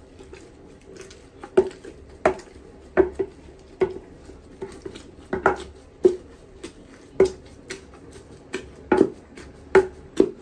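Wooden pestle pounding and mashing boiled plantain in a wooden mortar: a series of about a dozen dull thuds, somewhat irregularly spaced, under a second apart.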